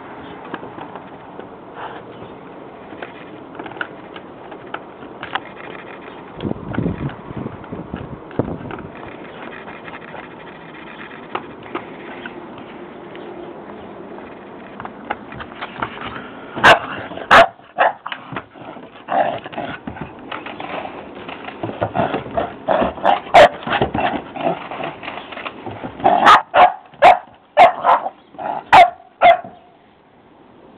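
Old English Sheepdog barking in short, sharp barks: a couple about halfway through, then a quicker run of them near the end. Before the barking, light knocks and scuffs of the plastic ball and the dog's paws on wooden decking.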